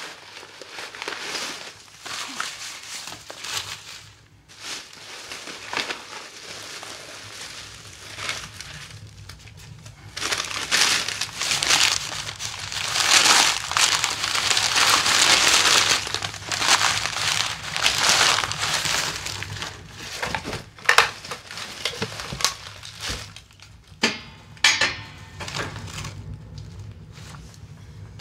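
Crumpled paper and plastic packaging crinkling and crushing as it is stuffed by hand into a wood stove's firebox. The crinkling is loudest in the middle stretch, and a few sharp knocks come near the end.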